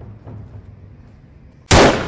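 A single pistol gunshot near the end, sudden and very loud, with its echo trailing off.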